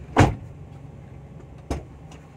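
A Daihatsu Ayla's front door slammed shut from inside the cabin: one loud, sharp thud about a quarter second in, then a lighter knock about a second and a half later. The door panel has glasswool damping fitted behind the trim, and the slam is a test of whether the door trim still rattles.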